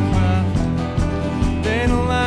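Country band playing, with acoustic guitar and banjo over a full band. A man's singing voice comes back in near the end.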